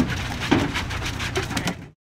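Boat deck at sea: a steady low engine hum with a few sharp knocks and thuds on the deck, all cutting off abruptly near the end.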